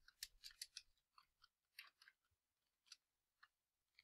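Faint computer keyboard keystrokes: a quick run of taps in the first second, then a few scattered clicks.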